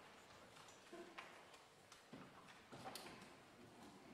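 Near silence in a large chamber, broken by a few faint, scattered knocks and rustles of people moving about and handling things at the benches.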